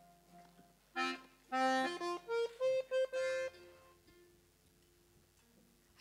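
Diatonic button accordion playing a short phrase of a few notes and chords about a second in, then stopping and letting the last notes die away.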